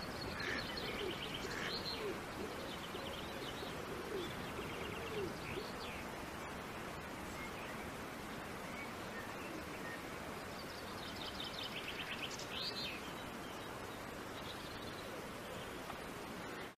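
Birds chirping and trilling over a steady hiss of outdoor ambience, with a run of lower swooping calls in the first few seconds.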